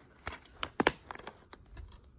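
Plastic DVD case clicking as it is handled: a quick, uneven run of about seven sharp clicks, the loudest a little under a second in.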